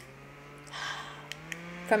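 Small battery-powered handheld fan running close to the microphone: a low motor hum that rises in pitch over the first second and a half as the fan spins up, then holds steady. A click comes at the start, and a brief breathy rush of air about a second in.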